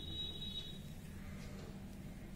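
A high, steady electronic beep lasting about a second, over a low steady hum.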